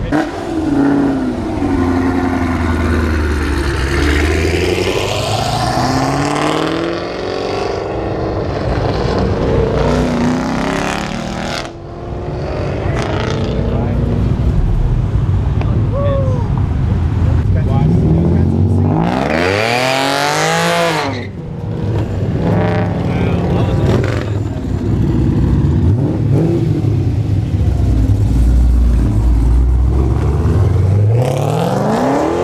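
Cars pulling out one after another and accelerating past, engines revving up and dropping back. About 19 seconds in, one car revs hard, its pitch climbing steeply and then falling away as it passes. Near the end a Pontiac G8 sedan accelerates away.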